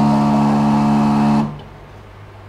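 Pump of a semi-automatic liquid filling machine running with a steady hum as it dispenses a 100 ml dose into a bottle. It cuts off suddenly about one and a half seconds in, when the set volume has been delivered.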